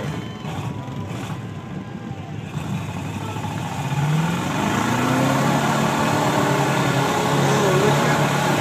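Pickup truck engine working through a mud pit. It runs steadily at first, then revs up about four seconds in, rising in pitch and getting louder, and holds the higher revs.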